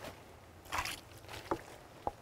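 Water poured from a plastic bucket splashing faintly onto a freshly sawn cherry slab, with a short splash just before a second in.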